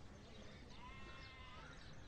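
A single faint animal bleat, about a second long, rising and falling in pitch.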